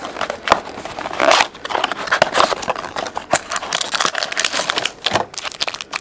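Hands handling and opening a small cardboard trading-card box and sliding out the card inside: rustling, scraping and crinkling of cardboard and wrapper, broken by many small clicks and taps.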